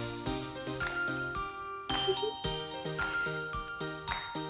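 Light background music: a tinkling, bell-like tune of quickly struck notes.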